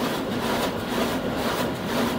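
High-speed digital printing press running steadily through a print job, a constant low hum with a regular pulse about twice a second.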